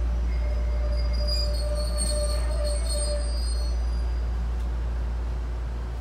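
The low running rumble of an electric train, heard from inside the passenger car. A high, thin wheel squeal sounds over it for the first three seconds or so. The sound eases off toward the end as the train slows into a station.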